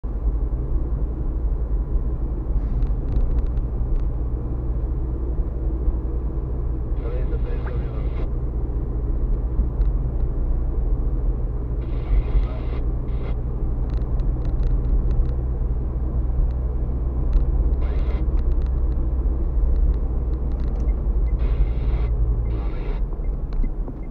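Car driving, heard from inside the cabin: a steady low rumble of engine and road noise, with short bursts of hiss every few seconds.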